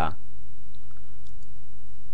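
A few faint computer mouse clicks, as the drawing tool is switched to the rectangle tool, over a steady low electrical hum.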